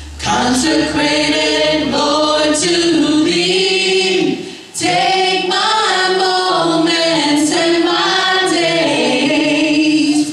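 A church worship band's mixed male and female singers singing together in harmony, voices to the fore with little instrumental backing. A low steady hum sits under the voices for the first three or so seconds, and there is a short break between phrases about four and a half seconds in.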